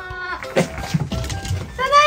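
Shiba Inu whining excitedly in greeting: a loud, high cry that rises and then holds steady near the end, over light background music.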